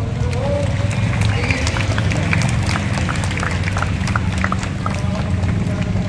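A crowd of people milling and talking outdoors, with a run of short sharp clicks and taps through the middle seconds over a steady low rumble.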